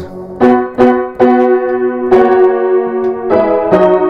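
A Hagspiel grand piano from about 1870 played with both hands: chords struck several times in quick succession, then held and left ringing. The piano is way out of tune, not having been tuned for a very long time.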